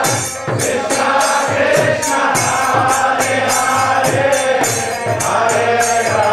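Kirtan: a group of voices chanting a mantra together over mridanga drum strokes and karatalas hand cymbals, which clash on a steady beat several times a second.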